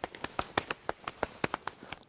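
A quick, irregular run of light taps and slaps, several a second, from hands, forearms and sleeves meeting as two people work through a Wing Chun trapping drill.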